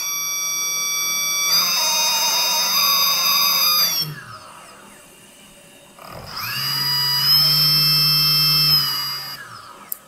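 Small brushless (BLDC) model-aircraft motor driven by a repaired three-phase controller, whining as it spins up, running steadily for about two seconds and winding down. It spins up again about six seconds in and winds down near the end. After the motor jerks at first, the steady whine shows the repaired controller now driving it.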